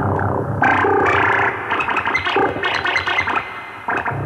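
Moog Matriarch semi-modular analog synthesizer playing a dense, noisy experimental passage, with several pitched tones changing quickly. At the start some tones slide downward, and a louder layer comes in about half a second in. Near the end the sound fades, then jumps back suddenly.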